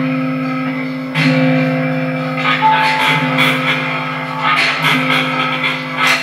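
Live experimental improvised music from electric guitar, electronics and metal-bar percussion: a low sustained drone that swells back in about every two seconds, with a high held tone that comes back twice and noisy rattling textures above.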